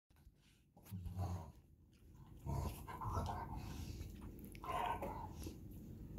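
Dog growling in about three short bouts, the first about a second in and the last near five seconds.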